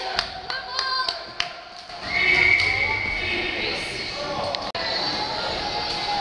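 Box lacrosse play in an arena: sharp clacks and taps of sticks and ball in the first second and a half, under the voices of spectators and players. A high held note sounds for about a second starting near two seconds in.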